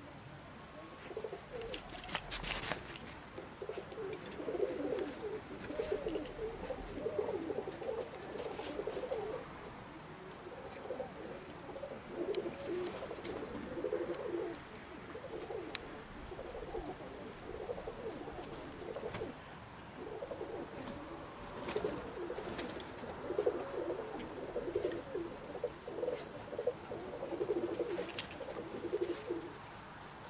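Pigeons cooing in repeated, overlapping bouts, with a few sharp clicks about two seconds in and near the end.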